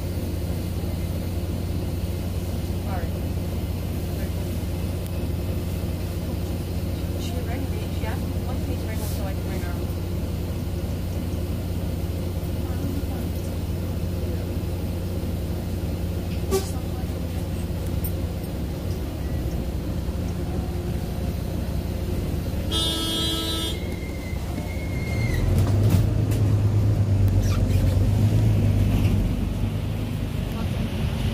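Inside a moving double-decker bus: a steady low diesel engine hum with road noise and light rattles. About two-thirds of the way through, a vehicle horn gives one short toot, and near the end the engine grows louder for a few seconds as it pulls harder.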